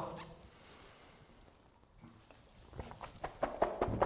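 A man drinking in gulps to wash down the taste of fermented herring. It is quiet at first, then from about two and a half seconds in comes a run of short gulping and clicking mouth sounds.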